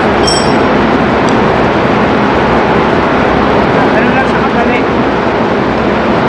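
Loud, steady machinery noise of a ship's engine room with a low drone underneath, starting abruptly. Faint voices are heard under it about two-thirds of the way in.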